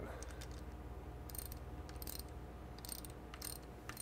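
Hand ratchet wrench clicking faintly as the IDG quad ring bolt is turned down, with fine quick pawl clicks and a few louder bursts of clicking in the second half.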